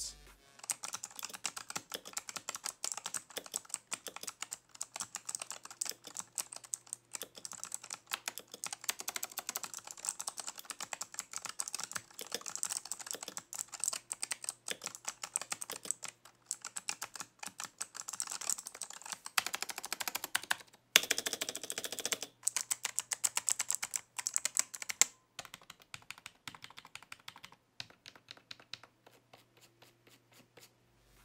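Razer Huntsman Elite keyboard's clicky opto-mechanical switches (Razer Purple) being typed on quickly: a dense run of crisp key clicks, with an especially fast, loud clatter about twenty seconds in and sparser keystrokes near the end.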